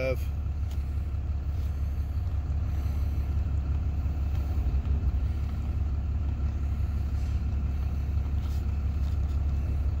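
Ram 2500 pickup's engine idling steadily, a low even rumble heard from inside the cab.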